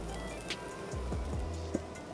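Quiet background music over the faint sizzle of diced onions and peppers frying in olive oil in an enamelled cast-iron casserole pan.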